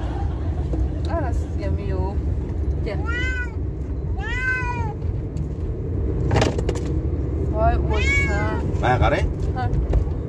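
A cat meowing several times, in rising-then-falling calls, with two long meows about three and four and a half seconds in and another around eight seconds. Under them runs the steady low rumble of the car's cabin on the move.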